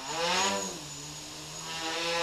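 Quadcopter's four Tiger MS2208 brushless motors and 8-inch props whirring as it lifts off and climbs. The pitch swells up and back down in the first half second, then holds as a steady tone.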